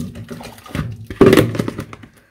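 A ladle pressing a hot, wet packet of washed wool fleece down into a plastic salad-spinner basket, squeezing water out in irregular pushes, loudest about a second in.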